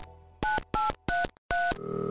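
Touch-tone phone keypad dialing: four short beeps, each a pair of notes, a few tenths of a second apart. Near the end a steady phone line tone begins as the call goes through.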